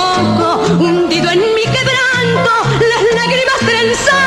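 A woman singing a tango in a high voice with strong vibrato, over a band with a bass line stepping from note to note.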